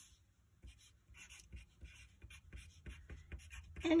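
Graphite pencil writing on a sheet of paper: a quick run of short scratching strokes that begins about a second in.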